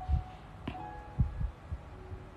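Handling noise: a few soft, low thumps and one sharp click, spread unevenly over two seconds.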